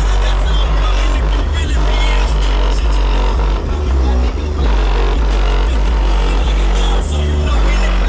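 Background music with a heavy, pulsing bass line.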